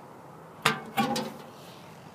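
Metal curbside mailbox door pulled open, giving two clanks about a third of a second apart, the first the louder, each with a brief ring.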